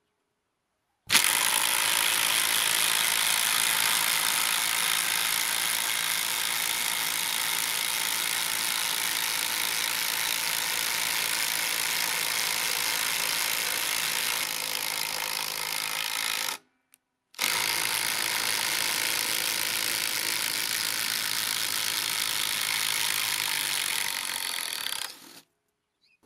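Parkside cordless impact driver hammering a large 24 cm, 12 mm wood screw into softwood, running continuously for about fifteen seconds. After a brief stop it runs again for about eight seconds, backing the screw out.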